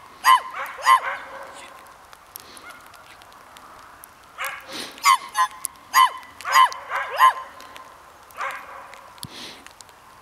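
Border collie barking in short, high, yipping barks: two near the start, then a run of several more from about halfway through.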